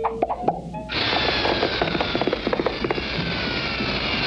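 Cartoon soundtrack music and effects: a few sharp knocks, then about a second in a dense rattling, hissing passage with slowly falling tones sets in and carries on.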